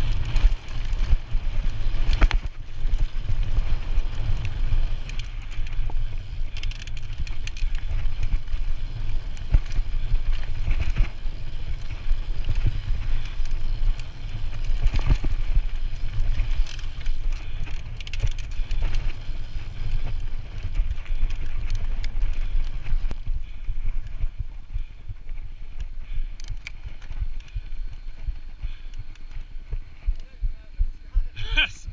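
YT Capra 27.5 mountain bike descending a dirt and gravel trail at speed: heavy wind rumble on the microphone, tyres crunching and frequent knocks and rattles of the bike over bumps. It quietens over the last several seconds as the bike slows.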